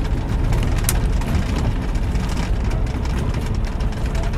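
Steady engine drone and road noise inside a semi truck's cab while driving, with a single brief click about a second in.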